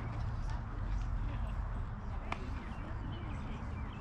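Indistinct chatter of voices around a softball field over a steady low rumble, with one sharp knock a little past halfway.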